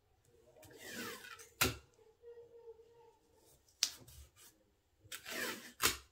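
Adhesive tape pulled off a desktop tape dispenser twice, each a short rasp ending in a sharp snap as it is torn on the cutter, with a single click in between.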